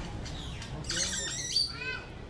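Market ambience sound effect: a murmur of voices with birds squawking, the loudest squawk about a second in.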